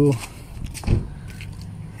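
A quiet background with one soft thump about a second in. The radiator fans are not running with the ignition on and the engine off.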